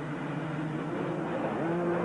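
A full field of 250cc two-stroke motocross bikes at full throttle together just off the start, their engines blending into one steady drone.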